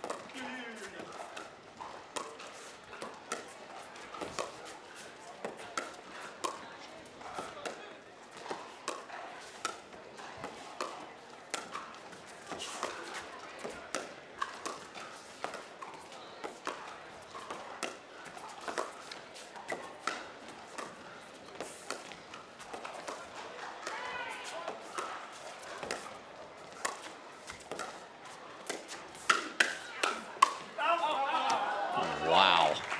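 Pickleball paddles striking a plastic ball in a long rally of soft dinks, a sharp pock roughly every second, over low crowd chatter in a large hall. Near the end the hits come in a quicker flurry.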